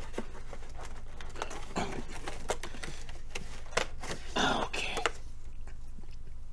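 Light clicks, taps and knocks of hands rummaging among items to pick out a beer can, with a couple of louder rustles about two and four and a half seconds in. A low steady hum runs underneath, and the handling stops about a second before the end.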